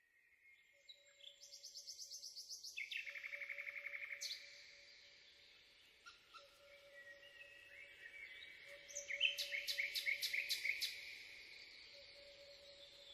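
Songbirds singing, with fast trills of rapidly repeated notes and short whistles, loudest about 3 s in and again between about 9 and 11 s. Under them a faint steady tone is held throughout.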